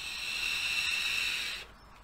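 Airy, whistling hiss of a long inhale drawn through a Captain X3S sub-ohm tank's airflow slots on an iJoy Diamond PD270 mod, cutting off about one and a half seconds in.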